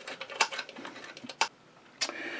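Light metallic clicks and taps from a screwdriver working the top cover screw of a Singer 237 sewing machine and the cover being lifted off. A sharper click comes about a second and a half in, and then the sound cuts off suddenly.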